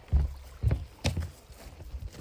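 Footsteps of people walking on grass: three dull, heavy steps about half a second apart.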